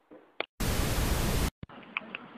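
A sudden burst of loud, even static hiss lasting about a second that cuts off abruptly, with a click just before and another just after. Its full-band sound, unlike the clips either side, marks it as an added static-noise transition effect between clips.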